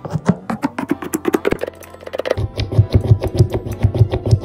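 Background music, with rapid clicks and taps from a jumbo Posca paint marker's tip being pumped against paper to open its valve and start the white paint flowing. The taps get deeper and more regular about halfway through.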